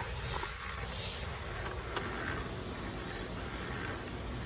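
Canon PIXMA iP2870 inkjet printer working through its start-up cycle after a button press for a test print: a low steady mechanical noise with short hissy swells near the start and about a second in, and a few faint clicks.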